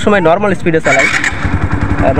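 TVS Apache RTR 150's single-cylinder, air-cooled four-stroke engine being electric-started. There is a brief whir of the starter about a second in, then the engine catches and settles into an even idle.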